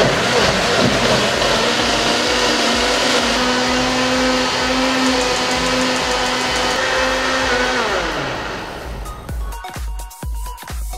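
Moulinex blender motor grinding a wet coconut and red chilli masala paste, running steadily at full speed, then winding down with a falling pitch about eight seconds in.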